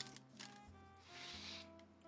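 Near silence with faint background music. About a second in comes a soft, breathy sniff lasting under a second: a cigar being smelled before it is lit.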